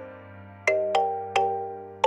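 Instrumental background music: bell-like electric-piano notes struck one at a time, each ringing out and fading, over a held low note. Three notes come in quick succession about two-thirds of a second in.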